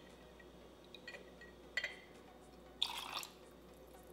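Dill pickle juice poured from a glass jar into a steel jigger and tipped into a metal cocktail shaker: faint trickling and dripping with a few light ticks, then a brief louder splash about three seconds in.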